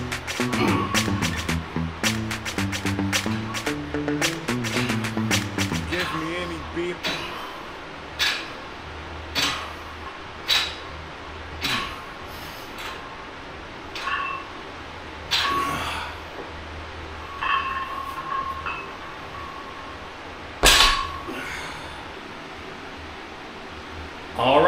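Background music with a beat for the first several seconds. After that come sharp metallic clinks with a short ring, about one a second, as the weight plates on a loaded EZ curl bar rattle through French press reps. The loudest clank comes near the end.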